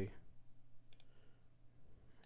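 Computer mouse clicks: two quick clicks close together about a second in.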